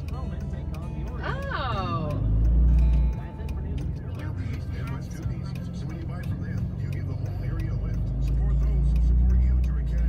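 Low engine and road rumble heard from inside a moving vehicle's cab. It swells loud for about a second just after the two-second mark and again over the last two or three seconds.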